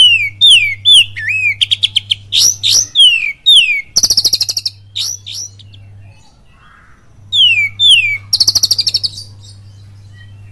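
Oriental magpie-robin (kacer) singing loudly in the full 'kapas tembak' style. Clear downward-sliding whistles mix with fast rattling runs of rapidly repeated high notes, in two bouts with a pause of about a second in the middle.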